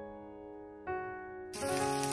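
Background music of held keyboard notes; about one and a half seconds in, shrimp hit hot oil in a frying pan and a steady frying sizzle starts.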